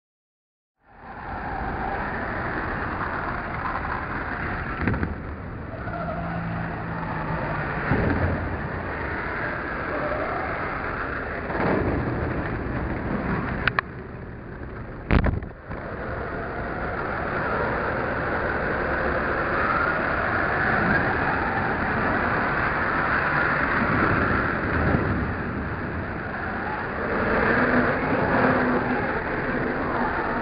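Radio-controlled model car driving over a dirt track, heard from a camera mounted on it: a rushing running noise with the motor's pitch rising and falling, and two sharp knocks about halfway through. The sound starts about a second in.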